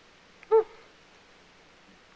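A woman's single short, high-pitched 'oh', about half a second in, over quiet room tone.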